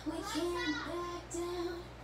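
A young child singing a few short held notes one after another.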